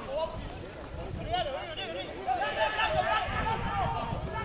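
Several voices shouting at once and over one another around a rugby pitch as play goes on, over a low rumble.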